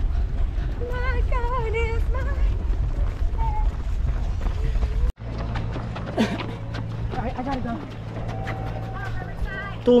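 Wind rumbling on an action camera's microphone while running, with a person's voice over it. The rumble cuts off suddenly about five seconds in, leaving quieter sound with more voice near the end.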